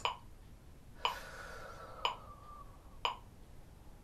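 Metronome set to 60 clicking once a second. Between the second and fourth clicks comes a deep breath drawn in through the mouth, a soft hiss.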